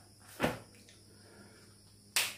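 A single short knock about half a second in, against faint room tone.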